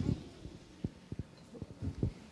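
A handful of soft, irregular low thumps, starting about a second in.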